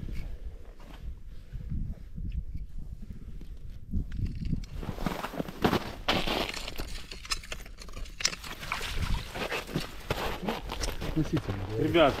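A pike being gaffed and pulled out through a hole in the ice: scattered knocks and scraping over a steady low rumble, with low muffled voices.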